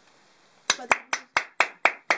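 One person clapping alone, with sharp, evenly spaced claps about four a second. About six claps start just under a second in, after a near-silent pause.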